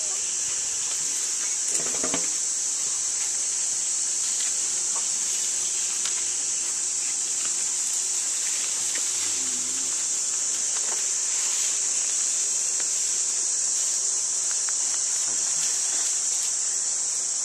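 Steady, high-pitched drone of an insect chorus, with a few faint short sounds over it, the clearest about two seconds in.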